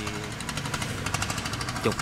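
A riverboat's engine running close by with a rapid, even knocking over a steady low hum.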